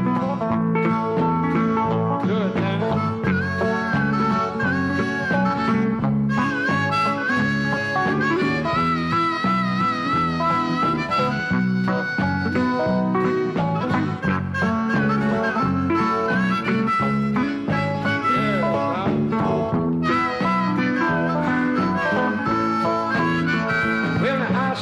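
Instrumental break of a country song: nylon-string and steel-string acoustic guitars picking and strumming, with a harmonica playing a wavering lead melody over them from a few seconds in.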